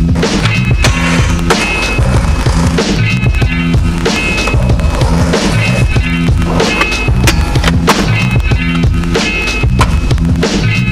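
Music soundtrack over skateboarding sounds: wheels rolling and sharp clacks of the board.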